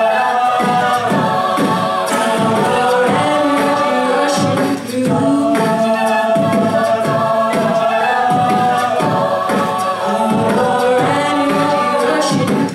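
Mixed a cappella group singing held chords behind a female soloist on a microphone, with a beatboxer keeping a steady beat underneath.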